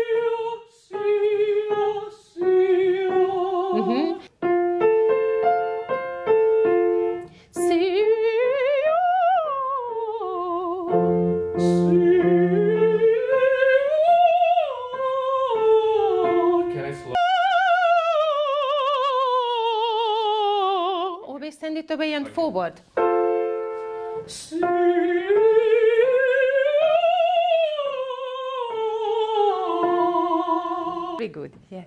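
Countertenor singing vocal warm-up exercises on vowels: held notes with vibrato and phrases that slide up and fall back, matched vowel to vowel. Between phrases a grand piano plays short chords that set the next starting pitch.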